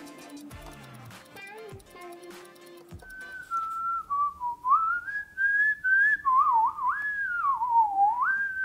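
Whistling: a single wandering whistled tune that starts about three seconds in and goes up and down in pitch. Before it there are faint music notes and light laptop keyboard clicks.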